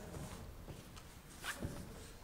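Quiet room tone in a large sanctuary, with one brief rustle or swish about one and a half seconds in.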